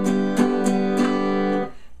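Acoustic guitar with a capo strummed in even eighth notes: a held chord rings under quick, regular strokes that stop about a second and a half in.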